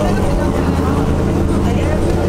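A steady, low engine drone with an even hum, as from a motor vehicle running close by, with faint voices behind it.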